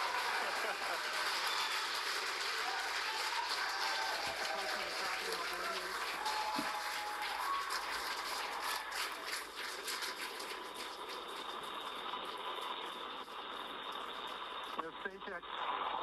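A crowd cheering and applauding, with voices mixed in. The clapping is densest around the middle and thins toward the end.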